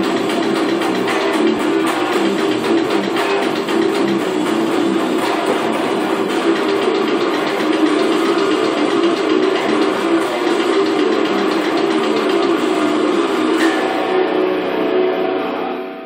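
Distorted electric guitar playing a fast death metal riff. Near the end a chord is struck and left to ring, fading out.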